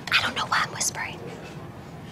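A woman's whispered speech for about the first second.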